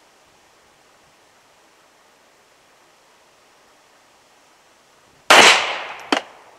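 A single shot from a .380 Auto pistol about five seconds in, a sharp crack that dies away in a short echo; before it only faint outdoor background.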